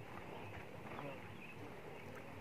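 Quiet outdoor background: a faint, even hush with a few faint, indistinct sounds and no loud event.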